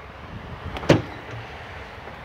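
2020 Ram 1500 power drop-down tailgate releasing: its latch lets go with a single sharp clunk about a second in as the tailgate starts to open.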